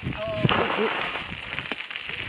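Bicycle rolling along a gravel trail: steady rough noise of tyres on gravel and air rushing past. A short voice-like sound comes in the first second.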